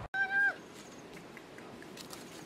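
A kitten meowing once near the start: a short call that holds one pitch and dips at the end.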